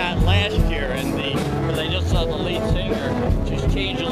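Live band music playing, with steady bass notes, drum hits and a wavering lead line above.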